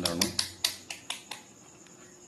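Plastic rotary selector switch of a handheld digital multimeter clicking through its detents: a quick run of about ten clicks in the first second and a half, as the dial is turned to buzzer (continuity) and diode-test mode.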